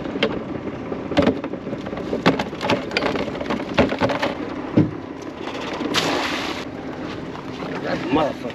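Mud crabs being shaken out of a mesh crab pot into a plastic tub: irregular knocks and clatters of the pot frame, crabs and tub, with a brief rush of noise about six seconds in.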